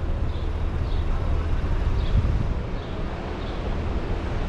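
Downtown street traffic noise: a steady low rumble of idling and passing cars.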